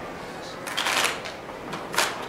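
A deck of playing cards being shuffled and handled on a cloth close-up mat: a short rustling burst of cards about a second in, then a sharp click of the cards near the end.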